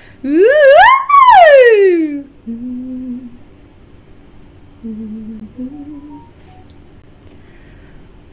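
A woman's voice warming up: a loud vocal siren sliding up about two octaves and straight back down, then a few soft, short hummed notes low in her range. It is a quick warm-up by a singer who is not yet warmed up.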